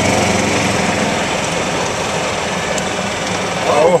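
Golf cart's small gas engine running under throttle as the cart accelerates from a crawl to about 13 mph, with a steady noise of wind and tyres. A voice exclaims "whoa" near the end.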